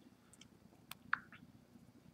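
Near silence: quiet room tone, with one faint sharp click about a second in and a brief faint tone just after it.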